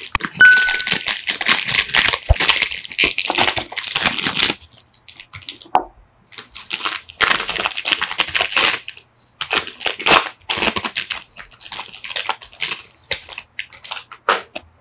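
Plastic snack wrappers crinkling and being torn open by gloved hands, in three long stretches of rustling with short pauses between them. A brief high ding sounds near the start.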